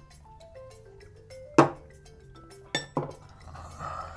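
A short run of light, xylophone-like music notes stepping down in pitch. Glass shot glasses knock down onto a table: one sharp knock about one and a half seconds in, then two smaller ones near the end.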